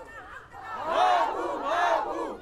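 A crowd of protesters shouting a slogan together with raised voices, the shout swelling twice about a second apart.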